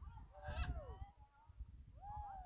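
Blue-and-gold macaw calling in flight: a loud squawk about half a second in, falling in pitch, and a second falling call starting at the very end. Wind rumbles on the microphone underneath.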